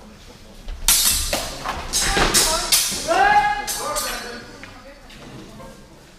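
A rapid exchange of several sharp clashes of steel training swords over about three seconds, mixed with shouts. The sound echoes in a large hall.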